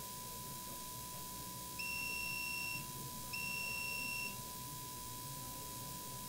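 An electronic beeper sounds two steady high beeps, each about a second long, with half a second between them. A faint continuous tone runs underneath.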